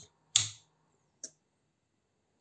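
Two clicks as the primary power source is switched off and the changeover relay drops over to the battery backup: a sharp click about a third of a second in, then a faint click just past a second.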